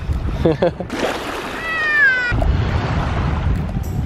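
A child's brief high-pitched squeal, falling in pitch, about two seconds in, over a rush of noise and a low rumble.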